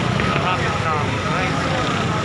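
Crowd chatter, many overlapping voices talking at once, over a steady low rumble of vehicle engines.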